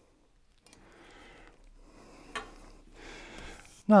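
Faint handling sounds from a steel straight edge and paper shims on a wooden board, with a single light click a little over two seconds in.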